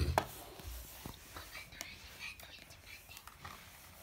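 Faint handling noise of small plastic toy figurines and the phone camera: a short knock right at the start, then scattered soft clicks and rubbing.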